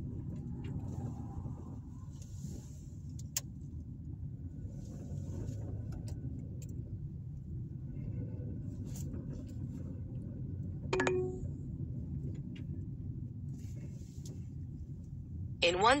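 Steady low road and engine noise heard from inside a car's cabin while driving slowly, with a few faint clicks and a short louder sound about eleven seconds in.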